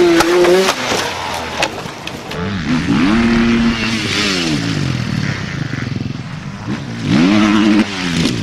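Enduro dirt-bike engines revving hard in short bursts, pitch rising and falling with the throttle, with a few sharp knocks and clatter as the bikes go down.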